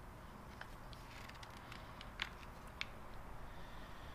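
A few faint clicks and light taps from handling a steel cylindrical square as it is turned in its fixture and a spring clamp is set back on it, the two clearest a little after two seconds in and near three seconds in.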